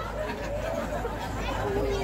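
Indistinct chatter: people talking at low level, no single voice clear.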